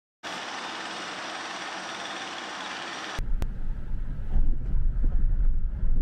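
A steady, even hiss for about three seconds, then a sudden change to a louder, uneven low rumble of a car driving, heard from inside the car.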